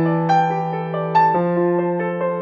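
Slow, gentle background music: piano-like notes struck about once a second over a held low note.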